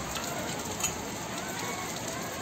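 A woven rug rustling and scraping as it is lowered and spread over a gritty concrete floor, a steady crackly noise with one small click about a second in.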